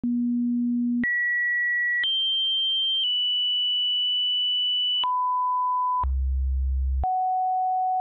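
A sequence of synthesized pure sine tones, each held steady and jumping abruptly to a new pitch about once a second: a low tone, then a high one, a higher one held for about three seconds, a mid tone, a very low hum, and a mid tone again, with a faint click at each change.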